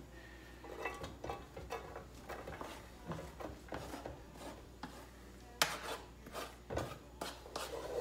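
Wooden spoon scraping chopped shallots and onion off a plastic cutting board into a saucepan: quiet scrapes and light taps, with a couple of sharper knocks about two-thirds of the way through.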